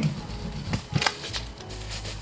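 A silicone spatula scraping bits of fried egg across a honeycomb-textured stainless nonstick frying pan, with two short knocks about three-quarters of a second and a second in. Quiet background music plays underneath.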